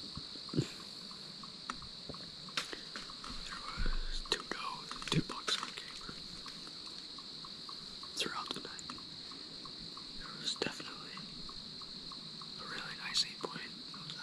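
A person whispering close to the microphone, with small clicks and rustles of handling, over a steady high-pitched insect chorus.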